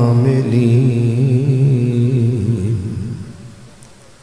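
A man's voice chanting one long held note of the Arabic opening praise of a sermon, its pitch wavering slightly, fading away about three quarters of the way in.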